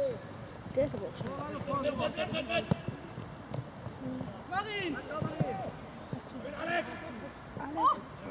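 Distant, indistinct shouts and calls from football players and spectators across an outdoor pitch, with a couple of sharp knocks of the ball being kicked.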